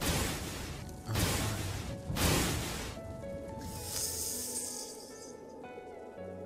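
Cartoon sound effects over background music: three sharp noisy bursts about a second apart, each fading away, then a high hissing sound between about three and a half and five seconds in.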